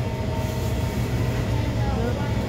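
Steady low hum and rumble of shop background noise, with a couple of faint steady tones running through it.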